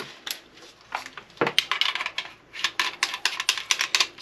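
Benelli SuperNova pump shotgun's magazine cap being handled and threaded onto the magazine tube: a couple of separate clicks, then from about a second and a half in a quick, irregular run of small clicks and rattles of the parts.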